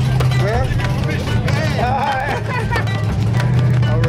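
Car engines idling with a steady low hum, mixed with people's voices and music playing in the background.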